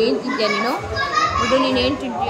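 A toddler babbling and vocalizing in a high, wavering voice.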